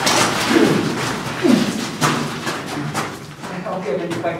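Thuds and knocks of a staged fight rehearsal: blows landing on a round wooden shield, with scuffling and short vocal grunts.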